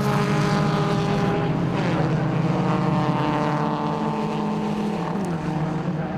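Engines of a pack of BMW E36 Compact race cars running together, several engine notes overlapping, their pitch easing down early on.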